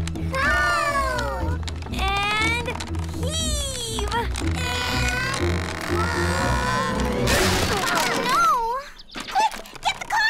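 Cartoon soundtrack: background music with a steady bass under a run of high, gliding squeals, then a sudden noisy clatter about seven seconds in as the cart's wooden wheel comes off.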